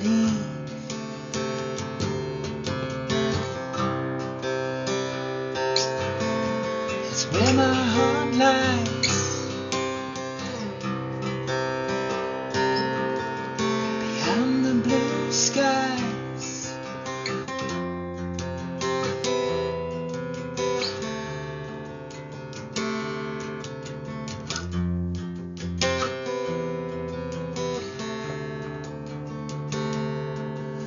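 Guitar strummed and picked in an instrumental passage between the verses of a song, with chords changing throughout. Wavering, gliding held notes come in about a quarter of the way through and again about halfway.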